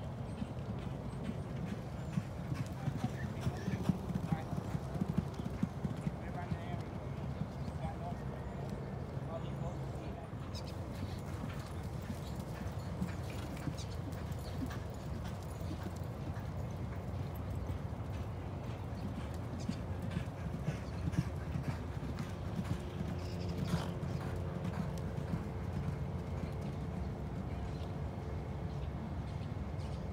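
Hooves of a thoroughbred racehorse clopping on a dirt track as it walks past close by, over a steady low outdoor rumble.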